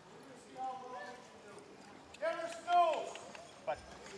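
Hooves of a team of Belgian draft horses clopping on dirt as the team pulls a cross-haul rope to roll a log up a log deck, with men's voices calling out, loudest a little past the halfway point.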